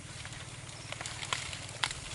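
Short sharp snaps and clicks of wet plant stems and water as people wade and pull through dense floating aquatic vegetation in shallow swamp water, the loudest snap near the end, over a steady low hum.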